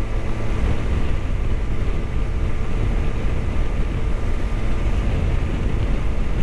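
Motorcycle cruising at a steady speed on the open road: an even engine drone under loud wind rumble on the microphone.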